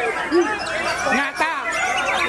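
Several caged white-rumped shamas (murai batu) singing at once, a dense tangle of overlapping whistles, trills and chatter.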